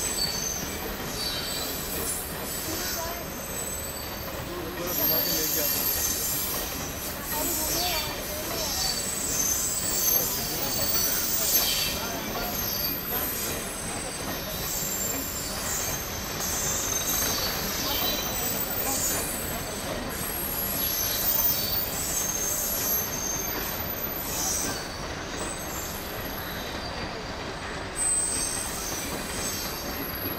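Long rake of Maharajas' Express passenger coaches rolling slowly past over the rails, wheels squealing against the rails in high-pitched screeches that come and go over a steady rumble.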